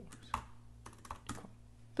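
Computer keyboard being typed on: a handful of faint, unevenly spaced keystrokes.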